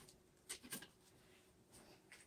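Near silence: room tone, with a couple of faint brief clicks about half a second in.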